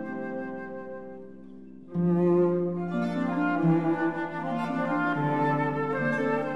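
Classical chamber music for flute, viola and harp. A held chord fades away, then about two seconds in the ensemble comes back louder, with a low bowed string line under the flute's melody.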